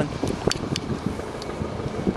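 Steady outdoor background noise with some wind on the microphone, and a single sharp click about half a second in.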